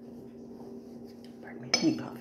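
A faint steady hum, then near the end a single sharp, ringing clink of a ceramic mug knocking against a hard surface as it is picked up.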